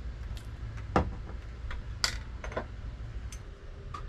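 Spoon scooping minced garlic from a glass jar, with a few light clicks and taps against the jar. The sharpest tap comes about a second in.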